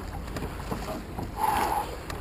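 Oars working and water moving around a wooden Ness yawl being rowed slowly upstream against a strong river current, a little louder about one and a half seconds in.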